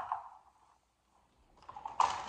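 Hard plastic parts of a baby walker clicking and knocking near the end as the truck-shaped body is worked off its base, finishing in one sharper knock.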